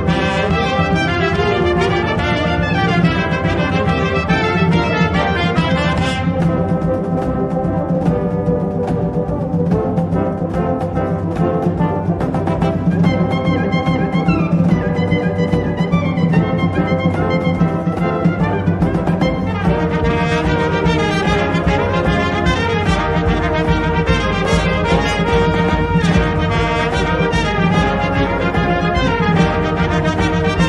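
Brass band playing, with trumpets carrying the melody over low brass and percussion. The band thins to a lighter passage about six seconds in, and the full band comes back in about twenty seconds in.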